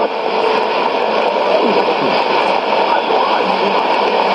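Steady shortwave hiss and static from a Sony ICF-2001D receiver tuned to an AM signal on 9775 kHz, with no clear programme audio. The music that was playing cuts off right at the start.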